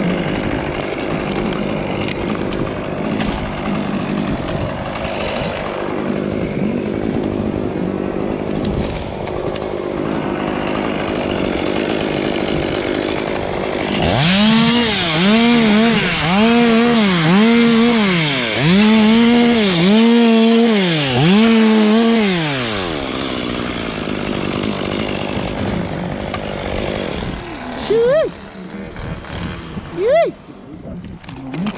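Dry palm fronds being cut high in a palm tree, first a steady rasping cutting noise, then from about halfway a chainsaw revving up and down in about seven quick bursts, each rising, holding and dropping in pitch.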